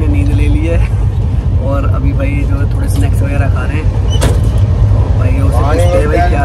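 Steady low rumble of an Indian Railways express train running, heard inside the passenger coach, with voices talking over it and a single sharp knock about four seconds in.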